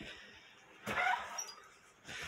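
A brief soft rustle of handling noise, about a second in, as a phone is swung around while filming.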